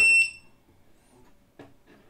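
The last moment of a steady, high-pitched electronic beep from the Xhorse VVDI Multi-Prog chip programmer, which stops abruptly a moment in. The beep signals that the P-flash read of the 9S12 MCU has completed. After it there is near quiet, with one faint click after about a second and a half.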